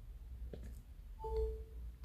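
iPhone 11 charging-connected chime sounding on its own while the cable stays plugged in: a brief higher note over a lower one held about half a second, a bit over a second in. This repeated phantom connection beep is the sign of a charger that does not work well with the phone.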